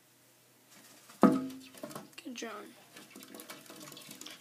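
Quiet at first, then from about a second in a man's voice with clicking and rustling handling noise as the phone is jostled.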